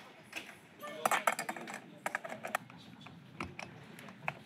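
Light metallic clicks and clinks of hand tools and small metal parts being handled at a workbench, in quick clusters about one and two seconds in.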